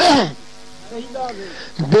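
A man's voice in a sermon: a loud cry falling in pitch at the very start, then quieter voice sounds about a second in. A steady buzzing hum runs underneath.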